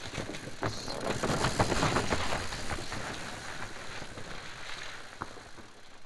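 Mountain bike rolling over rock and leaf-covered dirt: tyres crunching, with scattered knocks and rattles from the bike, loudest in the first half and fading away near the end.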